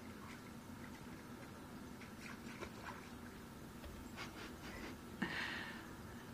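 Faint water sounds from an African wild dog standing in a shallow muddy puddle it has been urinating into: scattered small splashes and drips, with a brief louder rush of noise near the end.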